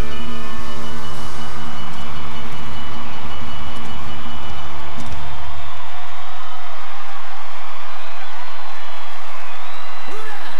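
Live band ending a song, its last sustained chord cutting off about five and a half seconds in, with a large crowd cheering and applauding throughout.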